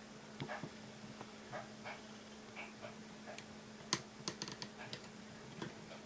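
Scattered small plastic clicks and taps from the joints of a Kreo brick-built Sentinel Prime figure being posed by hand, with a quick run of sharper clicks about four seconds in, over a faint steady hum.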